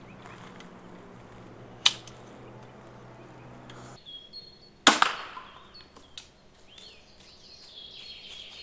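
Zubin X340 compound crossbow fired twice, about three seconds apart, shooting bolts: each shot a single sharp crack of the released string, the second louder with a short ringing tail.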